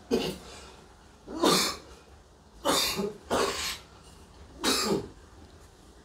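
A person coughing, about five separate coughs roughly a second apart, two of them close together in the middle.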